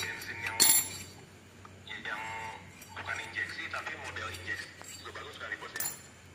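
A few sharp metallic clinks of metal parts being handled, the loudest about half a second in and another near the end, with low talk in the background.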